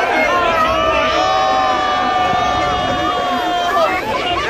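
Car tyres screeching in a long, steady drift, held for about three seconds before rising near the end, with a crowd cheering and talking.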